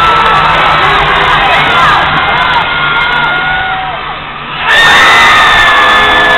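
Arena crowd at an indoor soccer game cheering and shouting, with many whoops and yells over a steady crowd noise. The noise eases off about four seconds in, then breaks back out loud as a shot goes at the goal, with long held notes over the cheering.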